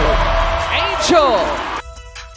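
Basketball broadcast sound with voices and arena noise, cut off near the end by a quieter electronic outro tune of steady chiming notes.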